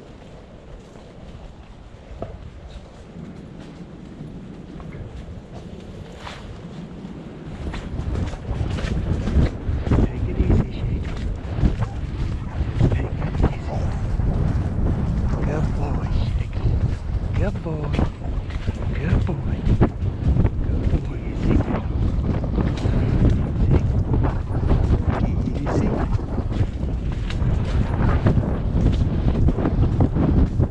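Hoofbeats of a Thoroughbred horse on a leaf-strewn dirt trail with heavy wind buffeting on the microphone. It is quieter at first and grows much louder about a quarter of the way in as the horse moves up into a canter.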